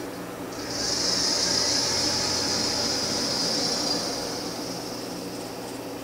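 A steady high-pitched hiss that swells in about a second in and fades toward the end, over a low steady hum.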